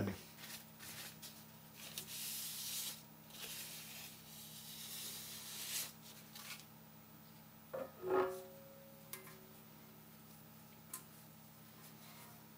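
Paper towel rubbing over the printer's hard surfaces, heard as a few seconds of scratchy hiss in two stretches, over a steady low hum.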